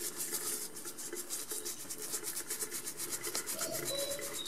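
A toothbrush scrubbing a small tortoise's shell in rapid, even back-and-forth strokes, bristles rasping on the hard shell.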